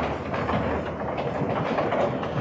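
A congregation rising from wooden church pews: a busy, irregular mix of shuffling, knocks and rustling.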